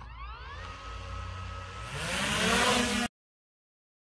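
DJI Mini 3 Pro's propeller motors spinning up from rest: a whine that rises in pitch, holds steady, then climbs higher and louder about two seconds in as the drone throttles up. The sound cuts off suddenly about three seconds in.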